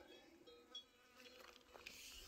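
Near silence, with the faint steady buzz of a flying insect such as a fly, and a few faint ticks.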